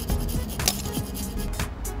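Background music with several short scraping strokes of a hand file on a rusty steel grounding strip, clearing the rust so the meter's lead can make good contact.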